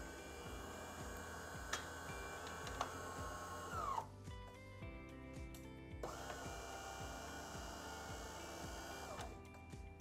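De'Longhi Dinamica bean-to-cup espresso machine running its motor as it shuts down, faint and steady. It winds down about four seconds in, then spins up again about two seconds later and runs until just before the end, with background music underneath.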